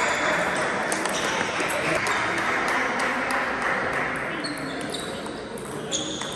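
Table tennis rally: a plastic ball struck back and forth, sharp irregular clicks of ball on bats and table with a brief high ping. Underneath runs a steady murmur of voices and play from other tables in the sports hall.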